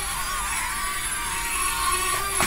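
Millennium Falcon-shaped toy quadcopter drone flying, its small propellers giving a steady high whine.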